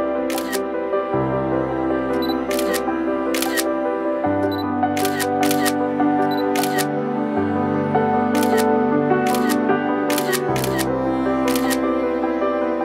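Slow, sustained background music with chords that change every few seconds, over about eleven camera shutter clicks, some in quick pairs.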